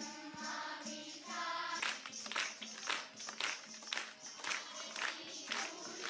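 A large group of children singing together in chorus. From about two seconds in, sharp beats join in a steady rhythm of about three a second.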